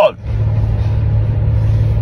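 Steady low drone of a car heard from inside the cabin, with no change in pitch.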